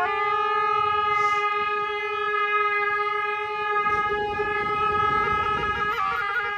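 Two gyaling, Tibetan double-reed oboes with brass bells, holding one long, steady, reedy note together.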